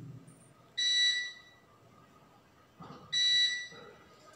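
An electronic beeper gives a steady, high-pitched beep about a second in and again about two and a half seconds later, each lasting under a second. Between the beeps the room is quiet.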